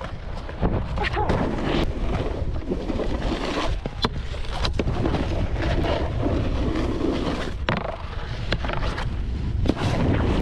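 Snowboard riding down a groomed run: the board's edges scraping and chattering on packed snow, with wind buffeting the microphone of a body-worn action camera. Several sharp knocks stand out from the steady rush.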